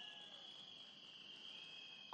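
Near silence with a faint, steady, high-pitched chirring of crickets.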